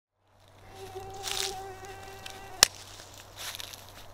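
A mosquito's thin, steady wingbeat whine close to the microphone, held for about two seconds and then cut off by a sharp click.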